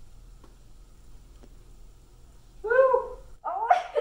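Quiet room tone with two faint ticks, then near the end a woman's high-pitched wordless vocal sounds, a rising and falling cry followed by more short vocal sounds.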